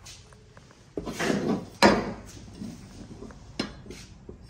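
Broken aluminium climbing and rescue hardware being handled on a plywood bench. A scrape comes about a second in, then one sharp metal clink and a few lighter knocks.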